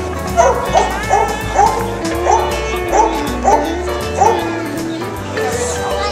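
A Plott hound barking repeatedly, about two barks a second for the first four seconds or so, over background music.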